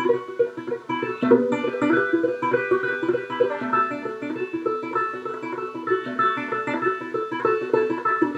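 Four-string banjo, strung upside down for left-handed playing and capoed at the seventh fret, finger-picked in an instrumental break: a steady run of quick plucked notes, the thumb alternating with the index finger.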